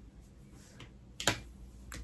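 Quiet room hush broken by a single sharp click about a second and a quarter in, with a fainter tap shortly before it.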